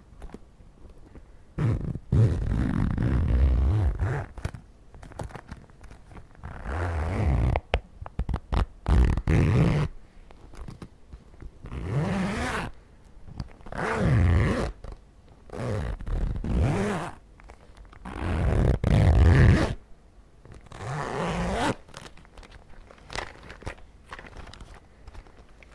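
Zipper on a fabric cosmetics pouch being drawn slowly open and shut right at the microphone, about eight separate strokes of a second or two each.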